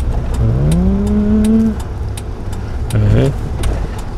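Steady low drone of a manual light truck's engine and road noise inside the cab as it pulls away in third gear, with a light, regular ticking that fits the turn signal set for a lane change.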